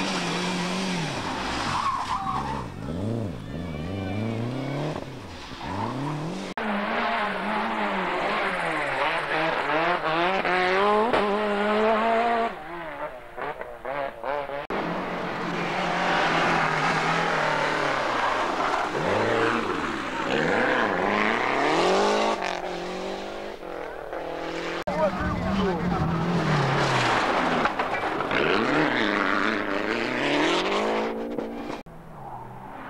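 Lancia Delta Group A rally cars driven hard past the roadside, their turbocharged four-cylinder engines revving up and dropping back over and over through gear changes and corners. Several separate passes follow one another, with a short quieter stretch about halfway through.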